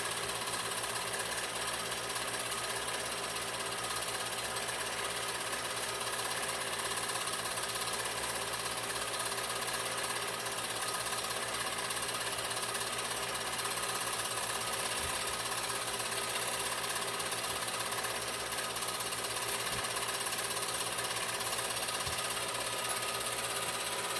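Film projector running steadily, its motor and film mechanism making a constant whirring clatter.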